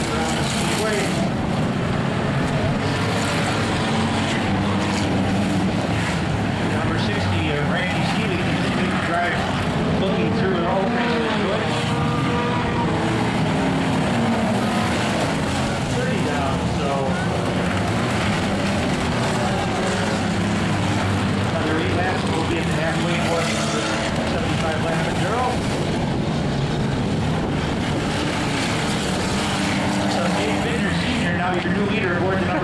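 Engines of a field of enduro race cars running laps on a dirt oval, a continuous mix of engine noise whose pitch rises and falls as cars pass, with spectators' voices mixed in.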